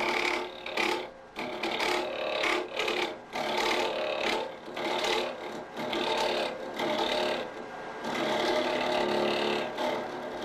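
A hook tool hollowing a small wooden ball spinning on a wood lathe, taking light cuts. Each cut is a rasping scrape with a ringing tone in it, one to two seconds long, with short lulls between them.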